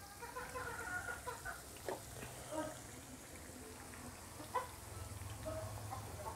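Oil sizzling faintly as unniyappam deep-fry in the cups of an unniyappam pan, with a couple of light knocks as the fried balls are turned out.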